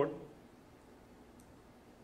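The end of a man's spoken word, then a pause of near silence in the room's quiet tone, broken by one faint click about one and a half seconds in.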